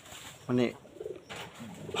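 A dove cooing faintly in the background, with low coos near the middle and again near the end.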